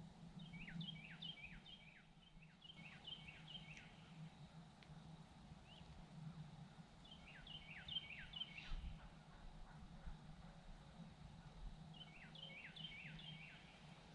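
A distant songbird singing three phrases of quick, repeated down-slurred whistled notes, heard faintly over a steady low hum.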